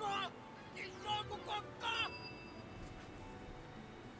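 Faint anime episode audio at low volume: a few short voiced exclamations in the first two seconds, then faint steady high tones held for about a second.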